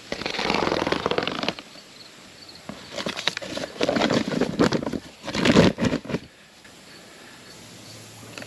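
A large paper oat sack with a woven plastic liner rustles and crinkles as its stitched top is pulled open and the sides are spread. The sound comes in several bursts, loudest about five and a half seconds in, then goes still.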